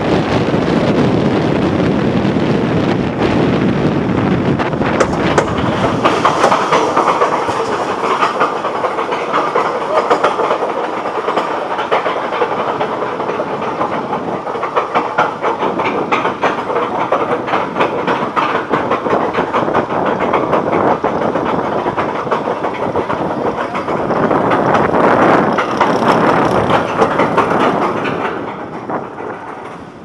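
Steel roller coaster train rattling along its track, then hauled up a chain lift hill with a steady, dense clacking. The clatter falls away near the end as the train reaches the top.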